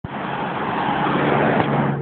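A motor vehicle running close by: a steady engine hum under a dense rush of road noise.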